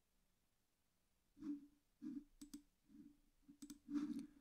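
Near silence for about a second and a half, then a run of faint, irregular clicks, about eight in two and a half seconds, typical of computer mouse clicks.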